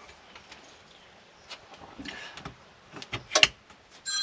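Red rotary battery disconnect switch turned off, a sharp click about three and a half seconds in, after a few faint handling clicks: the 12-volt battery bank is being cut from the electrical system.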